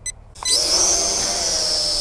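Mengtuo M9955 X-Drone's motors starting up about half a second in: a sudden high whine that climbs briefly in pitch and then holds steady, with a hiss from the spinning propellers, as the drone sits on the ground.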